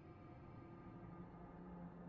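Near silence with a faint, steady low drone fading in.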